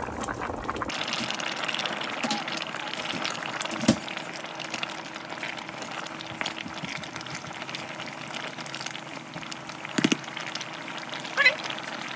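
A pot of soup bubbling on the stove while it is stirred with a spatula, with two sharp knocks, about four seconds in and again near ten seconds.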